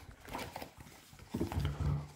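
Faint handling of a card binder as an insert is fitted, then about a second and a half in a man's low, held wordless vocal sound.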